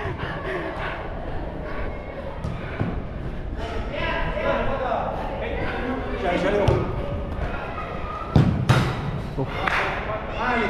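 Players' voices calling out across an indoor five-a-side pitch in a large, echoing hall, with two loud thuds of the football about eight and a half seconds in.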